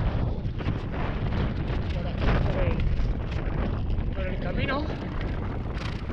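Steady low rumble of wind on a handlebar-mounted action camera's microphone, mixed with the noise of bicycle tyres rolling slowly over loose gravel.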